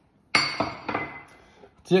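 Kitchen crockery clinking: one sharp ringing clink of a small ceramic bowl, then a few lighter knocks as it rings out.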